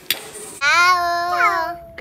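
A child's voice making one long drawn-out vocal sound, held a little over a second with a slight dip in pitch near its end. A brief click comes just before it.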